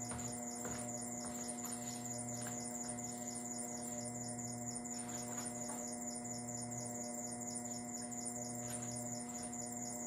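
Steady electrical hum of several held tones, with a faint, rapid, high ticking running over it.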